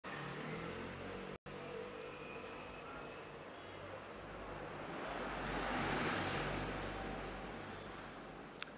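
Steady background noise of a car workshop, a rushing hiss that swells and fades around the middle. The audio cuts out for an instant about a second and a half in.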